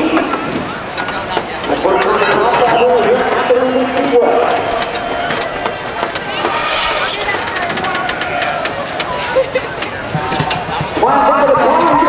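Several people talking over one another, with crowd chatter. A brief hiss comes a little past halfway.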